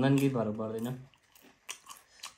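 A man's voice for about the first second, then a few short crisp crunches of someone chewing chatpate, a crunchy spicy puffed-rice snack, near the end.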